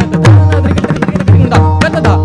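Pakhawaj played solo in Mattaal, with quick strokes on the right head and deep, ringing bass strokes on the left head. Under it a harmonium holds a steady repeating lehra melody.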